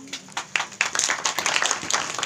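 Applause from a small group of people: a few scattered claps about half a second in, quickly building into steady clapping.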